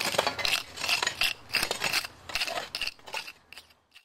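Two metal shovel blades scraping and clinking against gritty soil in rapid, irregular strokes, as a trench surface is cleaned back. The strokes fade out near the end.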